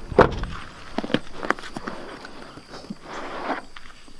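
A pickup truck door clunks sharply just after the start, followed by scattered clicks and rustling as plastic tackle boxes are handled, with footsteps.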